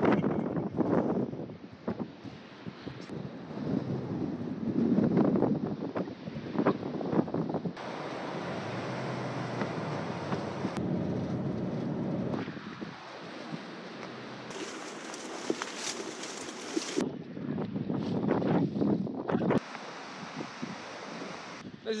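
Wind gusting on the microphone, uneven and loud at first. In the middle there is a stretch of steady road noise from inside a moving car.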